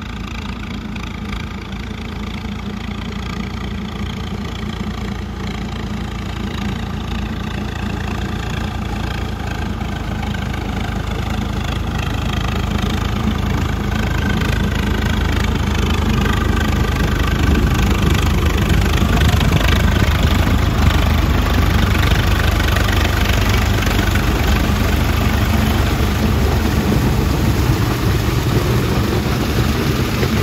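Swaraj 855 tractor's three-cylinder diesel engine running steadily under load while its rear PTO-driven implement whirs and throws wet muck. The sound grows louder for the first eighteen seconds or so as the tractor comes closer, then stays level.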